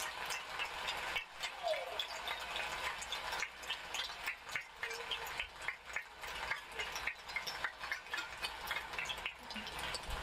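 Badminton play: sharp, irregular racket hits on the shuttlecock and brief shoe squeaks on the court floor, over a faint hall crowd noise.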